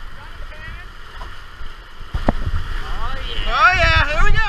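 Whitewater rapids rushing and splashing around an inflatable raft, with wind buffeting the microphone. About two seconds in the rush grows louder with a knock as the raft hits a wave, and near the end people on the raft yell and whoop.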